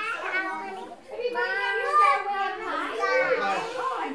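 Young children chattering and calling out, with adult voices among them; the voices dip briefly about a second in.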